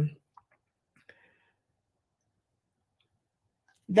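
Near silence between stretches of a woman's speech, with a few faint small clicks in the first second or so.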